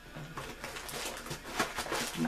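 Faint rustling and a few light clicks of wrapped wax melt packages being handled.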